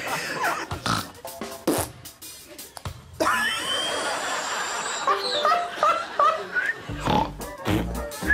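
A woman snorting and blowing raspberries in quick, short bursts for the first three seconds. From about three seconds in, bright background music with a stepping melody takes over.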